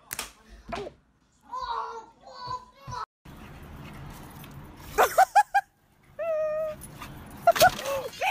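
Dogs yipping and whining: a quick run of four sharp high yips, then one drawn-out whine, then more quick yips near the end.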